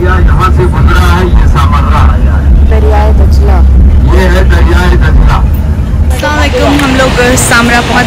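Steady low rumble of a bus in motion, heard from inside the passenger cabin, with people talking over it; the rumble stops about six seconds in while the voices carry on.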